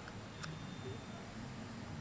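A single faint click about half a second in as a microSD card is pushed into a GoPro Hero 7 Black's card slot and clicks into place, which shows the card is seated. Low room hiss around it.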